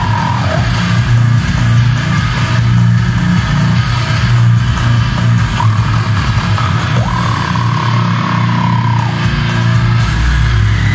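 A goregrind band playing live: heavily distorted guitar and bass over drums, dense and loud, heard from the crowd. About seven seconds in, a high note slides up and holds for a couple of seconds.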